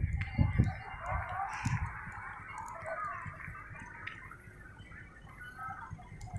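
Faint, indistinct voices over low rumbling bumps on the microphone, loudest at the start and fading toward the end.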